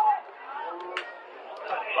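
Faint voices of several people calling out across an outdoor football pitch, with a short click about a second in.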